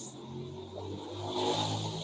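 A motor vehicle's engine running in the background, a low steady hum that grows louder across the two seconds.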